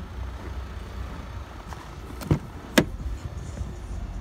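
Rear door of a Chevrolet Colorado crew-cab pickup being opened: two sharp clicks about half a second apart as the handle is pulled and the latch releases, over a steady low rumble.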